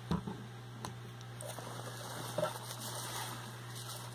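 A single soft knock near the start, then hands rummaging through crinkle-cut shredded paper filler in a cardboard box, giving a faint papery rustling with a few small clicks, over a steady low hum.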